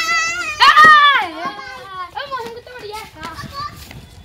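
A young child shouting and squealing with excitement, high-pitched and loudest in the first second or so, then quieter children's voices.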